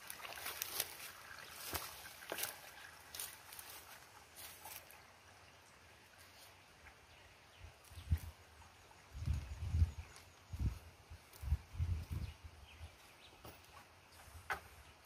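Liquid being poured from a plastic bucket into a knapsack sprayer's plastic tank, heard as a series of low thuds and glugs in the second half. Light clicks and rustling of handling come before it.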